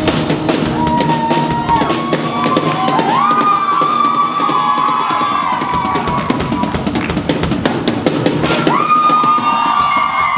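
Live rock band playing an instrumental passage: a drum kit pounding with rolls and cymbal crashes under electric guitars holding long notes that bend up and down in pitch. It builds into the big closing flourish of the song near the end.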